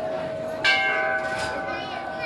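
A temple's metal bell struck once about two-thirds of a second in, ringing on with several clear tones that die away slowly, over the fading hum of an earlier stroke.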